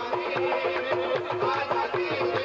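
Qawwali music: a harmonium melody over a held drone note, driven by a quick, steady hand-drum beat and hand claps.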